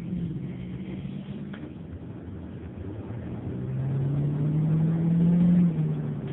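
Car engine heard from inside the cabin while driving, accelerating: its low note rises steadily in pitch and grows louder for a couple of seconds, then falls suddenly near the end.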